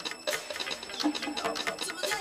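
Dance music played by a DJ, with a fast, high ticking percussion pattern over clicking beats and short pitched notes.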